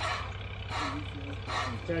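A male goat, held by the ear, giving about three short breathy calls over a steady low hum.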